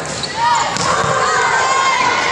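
Volleyballs being hit and bouncing on a hardwood gym floor, with a sharp smack a little under a second in.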